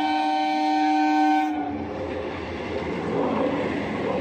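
Indian Railways EMU local train sounding one long horn blast that stops about one and a half seconds in, then the rumble and clatter of its coaches running past over the level crossing.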